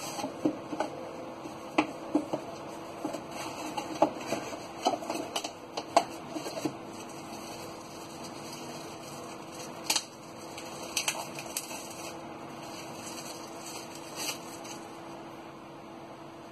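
Hands opening a cardboard box and handling a plastic-wrapped item: scattered clicks, taps and rustles, busiest in the first half, with a steady hum underneath.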